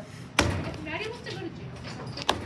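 A block of moist clay slammed down once onto a work board, about half a second in, a single sharp thud; the clay is being flattened into a slab.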